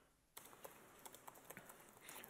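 Faint keystrokes on a computer keyboard, a quick run of separate clicks starting about a third of a second in.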